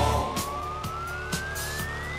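Electronic dance music build-up: a single synth sweep rises steadily in pitch over a sparse beat of about two hits a second, with the bass dropping away just after it starts.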